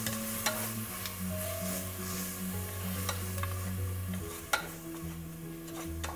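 Wooden spatula stirring and scraping onions and ginger-garlic paste sizzling in oil in an aluminium pressure cooker, with a few sharp knocks of the spatula against the pot, the sharpest about four and a half seconds in.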